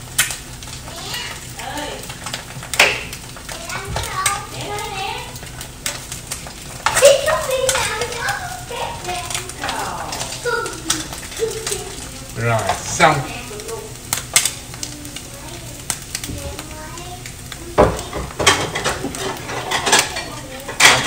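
Eggs sizzling in a frying pan while a spatula stirs them and knocks against the pan a few times.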